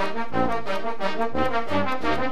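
Oaxacan municipal wind band (banda filarmónica) playing a son: trumpets and trombones carrying the tune in a steady rhythm over a low bass line.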